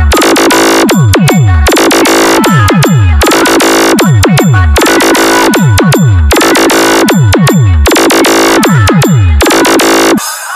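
Loud Indian competition-style DJ remix: a deep bass sweep falling in pitch repeats about once a second, with dense high synth hits between the sweeps.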